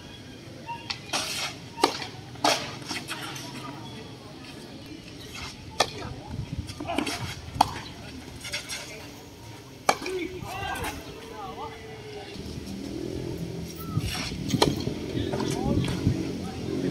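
Tennis rackets hitting the ball in a doubles rally: sharp pops every second or two, over background voices that grow louder near the end.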